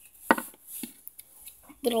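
A small plastic toy figure knocked down once sharply on a wooden tabletop, followed by a few lighter taps and clicks as the small plastic pieces are handled.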